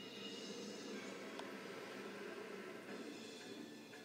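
Faint music from a television documentary's soundtrack playing in the room, with a single small click about a second and a half in.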